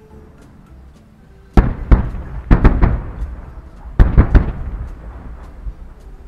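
Aerial fireworks bursting. A quick cluster of loud bangs comes about one and a half seconds in and a second cluster about four seconds in, each trailing off in a rumble, with faint small pops before them.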